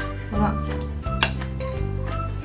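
Background music, with one sharp clink of kitchenware a little over a second in as a bowl is handled over the glass fruit bowl.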